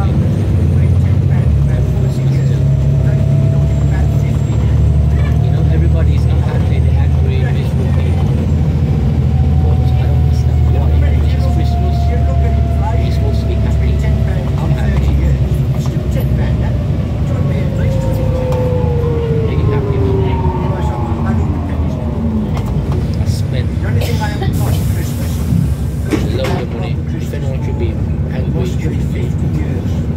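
Volvo B7TL double-decker bus's engine and driveline heard from inside the passenger saloon: a steady low drone with a faint whine that rises gently early on, then a whine that falls in pitch over several seconds past the halfway point as the bus slows.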